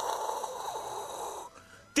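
A steady hiss, like a dentist's suction tube drawing air, lasting about a second and a half and then cutting off.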